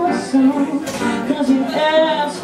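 A woman singing while playing her own accompaniment on a Schimmel grand piano.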